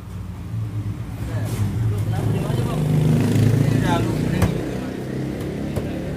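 A road vehicle's engine passing close by, growing louder to a peak about three and a half seconds in and then fading.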